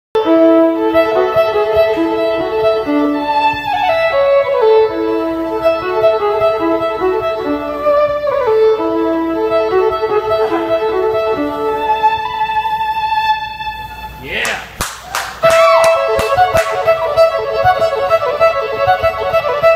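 A fiddle plays a solo of held notes and quick runs, with slides between pitches. About fourteen seconds in it drops to a brief quieter swooping passage marked by a few sharp knocks, then the tune picks up again.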